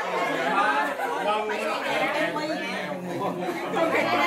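Several people talking over one another at once: lively group chatter.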